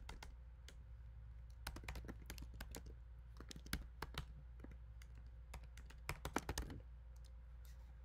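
Typing on a computer keyboard: quick runs of keystroke clicks with pauses between, the last run ending about a second before the end.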